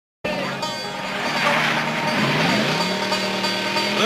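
A car engine running, its pitch rising about halfway through and then holding steady, mixed with other soundtrack sound.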